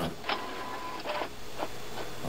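A few light clicks from computer keyboard keys being typed, with a short steady electronic beep about a third of a second in.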